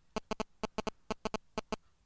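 A quick, uneven run of about a dozen sharp clicks, stopping shortly before the end.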